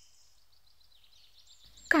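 Faint birds chirping in the background during a quiet pause, with a girl's voice starting to speak right at the end.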